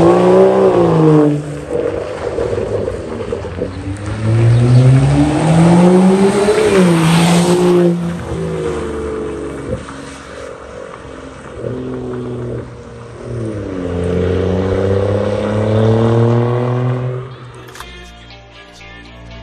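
BMW 535i's turbocharged inline-six through a tuned, M-style aftermarket exhaust, accelerating hard several times: the note climbs, drops sharply at each lift or gear change, and climbs again. It is loudest in the first half, quieter in the middle, and builds once more before fading out near the end.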